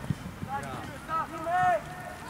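Shouts and calls of youth footballers across an outdoor pitch, several short raised-voice cries in a row, with a brief thump just after the start.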